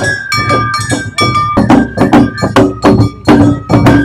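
Japanese festival music (matsuri bayashi) played live: shinobue bamboo flutes carry a high melody over a struck hand gong (atarigane) and taiko drums. The percussion strikes grow louder and busier about one and a half seconds in.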